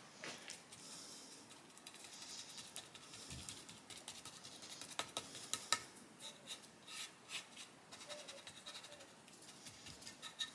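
Faint scratching and rubbing of a small bristle brush working wet mud onto a wooden guitar neck and headstock, with a few light clicks and taps, two sharper ones about five seconds in.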